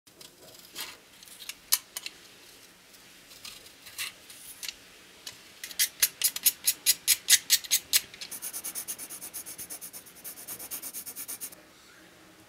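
A snap-off craft knife shaving the wood off a pencil in sharp scraping strokes. A few scattered strokes come first, then a quick loud run of about six strokes a second from around halfway through. That gives way to faster, quieter scraping that stops half a second before the end.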